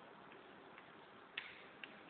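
Two sharp taps of chalk striking a chalkboard as writing starts, about a second and a half in and again just before the end, over faint room hiss.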